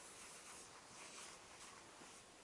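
Faint, soft rubbing of a chalkboard eraser on the board: a few light swishes.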